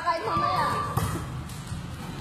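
Volleyball practice: a few sharp impacts of the ball being struck, the clearest about a second apart, amid children's voices calling out under a large open-sided hall's roof.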